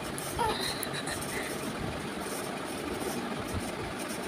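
Steady background rumble and hum with no clear source, with one short, faint falling vocal sound about half a second in.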